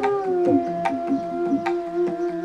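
A large bansuri (bamboo flute) holds one long low note that slides down a little at the start and then sustains. Mridangam strokes play beneath it: sharp slaps and bass strokes that drop in pitch.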